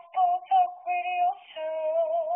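A high voice singing unaccompanied: a few short separate notes, then a long held note with vibrato starting about a second and a half in.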